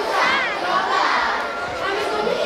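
A large group of children shouting and calling out together, many high voices overlapping and rising and falling in pitch.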